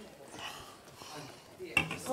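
Faint clatter of dishes and glassware, with quiet voices in the background and a sharp click near the end.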